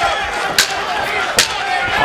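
Shouting voices and crowd noise at a cage fight, with two sharp smacks about a second apart.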